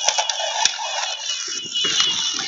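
Small hobby robot playing its thin electronic tune, with a sharp click about two-thirds of a second in and faint voices near the end.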